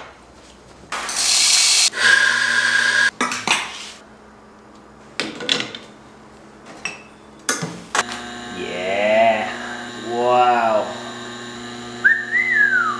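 Espresso being made on a home espresso machine. There is a loud burst of noise about a second in, then metal clicks and knocks as the portafilter is handled. From about eight seconds a steady hum sets in as the machine starts pulling the shot, and a person's voice sounds twice over it.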